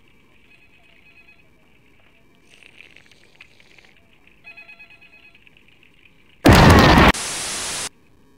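Faint hiss for about six seconds, then a sudden, very loud blast of harsh noise lasting under a second, which drops to a steady, quieter hiss and cuts off abruptly near the end.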